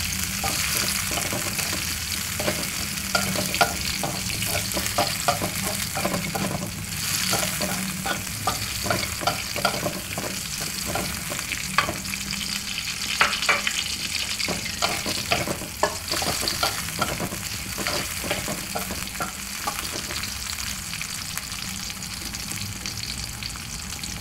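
Chopped chillies, shallots and garlic sizzling in oil in a metal wok, with a steady hiss. A slotted metal spatula scrapes and clinks against the pan in many short strokes as the food is stir-fried; the clinks thin out near the end.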